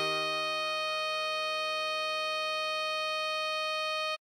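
Alto saxophone holding one long melody note, written C6 (sounding E-flat), over a sustained E-flat major chord in the accompaniment.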